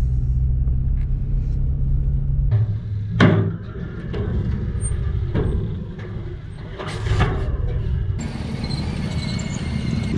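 Steady low engine drone from inside a moving vehicle's cab, cut off abruptly about two and a half seconds in. Rougher vehicle noise with several sharp knocks follows, the loudest about three seconds in.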